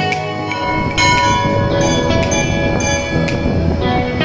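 Bells struck repeatedly from about a second in, each strike ringing on over the last, mixed with music.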